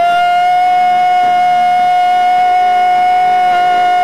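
A singer holding one long, steady high note over the worship band, wavering slightly near the end.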